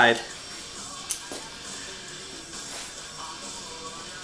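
A radio playing in the background, with music and faint talk, and one sharp click about a second in.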